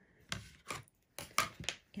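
A few sharp clicks and taps, about five in two seconds, of quilting tools being handled on a cutting mat.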